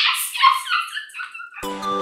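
A woman laughing for about a second and a half, then music with a loud held melody starting abruptly near the end.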